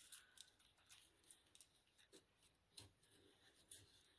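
Near silence with faint, scattered ticks and scratches: a small box cutter blade and fingertips picking at masking tape on the edge of a sheet of paper.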